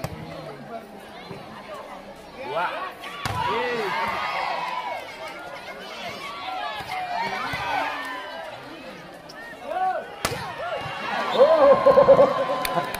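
Volleyball rally: sharp smacks of hands hitting the ball, about three seconds in and again about ten seconds in. Spectators shout and cheer throughout, swelling after the first hit and again near the end.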